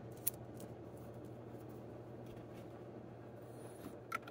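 Quiet room tone with a steady low hum, and one light click about a quarter of a second in, followed by a few fainter ticks, as a plastic ink dropper bottle is handled over a plastic paint palette.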